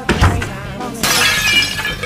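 Shattering crash of breaking glass: a sharp hit at the start, then a longer, bright shattering burst about halfway through, over background music.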